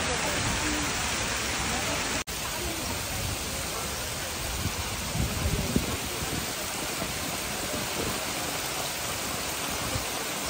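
Heavy rain falling on a lake's surface, a steady hiss. It cuts out for an instant about two seconds in, and a few low thumps come through around the middle.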